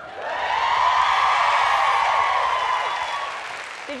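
Studio audience applauding, swelling within the first second and dying down toward the end.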